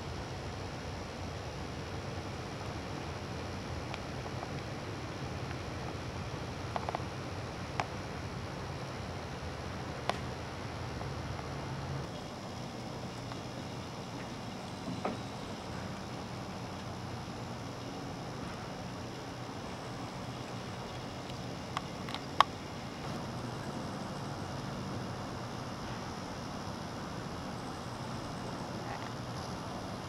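Steady faint background hiss with a low hum, broken by a few soft, scattered clicks; the hum shifts slightly about twelve seconds in.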